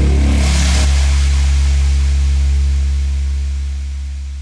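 The end of a dubstep track: a short last stretch of the full mix, then a single deep bass synth note held on, beginning to fade out near the end.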